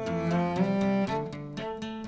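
Folk-rock song: bowed cello holding long notes over acoustic guitar, the notes changing about half a second and a second in.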